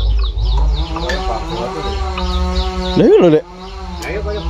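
Brahman-cross cattle mooing: one long, steady moo lasting about two and a half seconds, with small birds chirping throughout.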